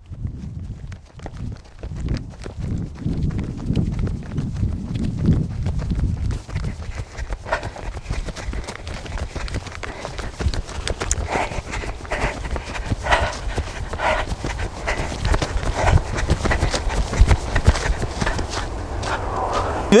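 Running footsteps on a grassy dirt track in a steady rhythm of thuds, picked up by an action camera carried in the runner's hand. Wind buffeting and handling make a heavy low rumble on the microphone.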